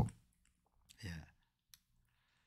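Quiet room with a man's brief low vocal sound about a second in, and a single faint computer-mouse click near the end.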